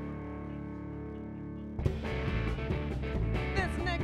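Electric lap steel guitar holding a sustained, slowly fading chord, then a blues band with drums and bass comes in loudly and suddenly a little under two seconds in, with sliding notes near the end.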